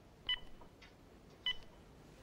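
Cordless phone handset beeping twice, about a second apart, each short beep starting with a small click.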